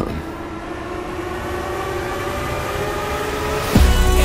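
A sustained, many-toned drone of trailer sound design that slowly rises and swells, then a deep booming hit near the end.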